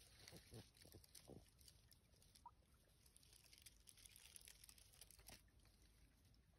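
Near silence: faint woodland ambience, with a few soft rustles in the first second or so and one brief, faint high note about two and a half seconds in.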